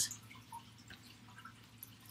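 Quiet room tone with a faint steady hum and a couple of small, faint clicks.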